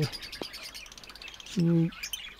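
Many caged pet birds chirping together in a breeding setup: a dense, rapid, high-pitched twittering, with a brief click about half a second in.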